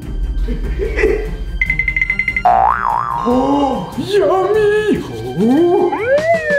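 Cartoon-style comedy sound effects over background music: a short buzzing ring, then a wobbling boing and a run of springy, up-and-down gliding tones.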